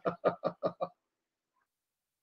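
A man laughing: a quick run of chuckles, about five a second, that stops about a second in.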